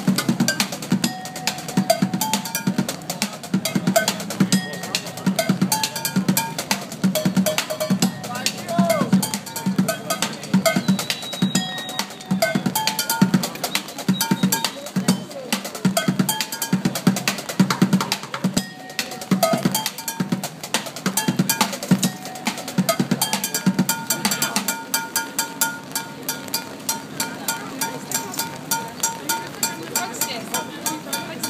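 Street drumming on an improvised kit of upturned plastic buckets and metal pots and pans: a fast, continuous rhythm of deep bucket thumps with bright metallic clanks over them.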